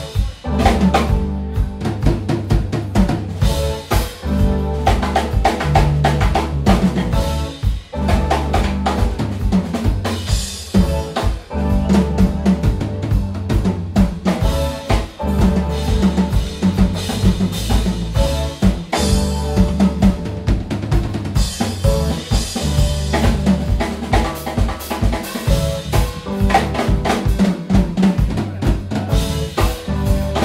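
Live jazz-rock band playing a groove, the drum kit prominent with snare and bass drum over a repeating bass line and keyboards.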